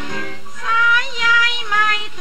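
A woman singing a Thai song with instrumental accompaniment, holding notes that bend slightly in pitch.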